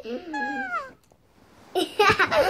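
A child's high, drawn-out vocal sound effect, one call sliding down in pitch for about half a second. After a short pause, a child's laughter starts near the end.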